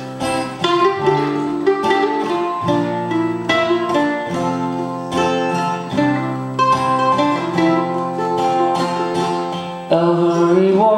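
Instrumental song intro on acoustic guitar and mandolin: strummed guitar chords under picked mandolin notes.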